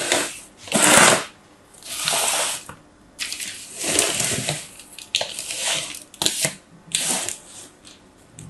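Plastic sand moulds being picked up, slid and set down on a tabletop: a series of short rustling, scraping bursts with a few sharp clicks and brief pauses between.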